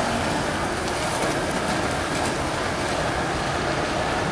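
Inline skate wheels rolling on a smooth concrete floor, a steady rolling noise.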